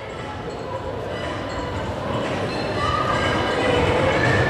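Steady low rumble of a large gym's background noise, growing slightly louder, with faint indistinct voices in it.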